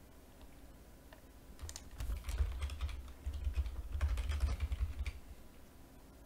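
Typing on a computer keyboard: a quick run of keystrokes with dull thuds on the desk, starting about a second and a half in and stopping about five seconds in.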